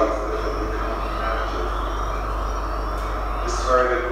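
Soundtrack of a video artwork on space debris played through room speakers: a steady noisy drone over a constant low hum, with brief voice-like sounds near the start and again just before the end.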